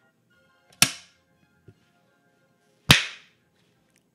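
Two hard, sharp smacks of bare hands, about two seconds apart, each dying away quickly; they are hit hard enough to sting and redden the hands.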